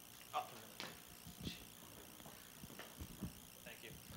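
A handful of soft, dull knocks and rustles from a handheld microphone being handled as it is passed into the audience, over a quiet room.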